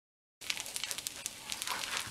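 Fried rice sizzling in a hot skillet, an even hiss with scattered small crackles. It cuts in abruptly a moment in, after dead silence.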